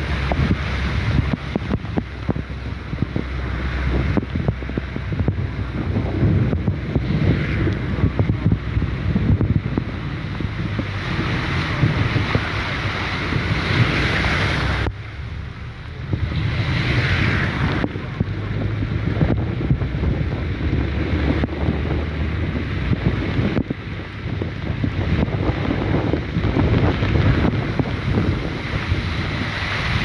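Hurricane-force wind gusting hard across the microphone with a low, buffeting rumble, over the steady hiss of heavy rain. The sound drops and jumps abruptly about halfway through.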